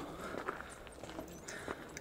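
Faint footsteps of someone walking on a trail: a few soft, irregular steps over a low rumble.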